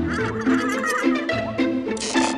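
Playful background music with a run of short, evenly spaced notes, and a wavering, squawk-like comic line over it in the first second.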